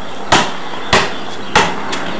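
Basketball dribbled on a concrete driveway close to the microphone: three sharp bounces at an even pace, a little over half a second apart, over a steady background hiss.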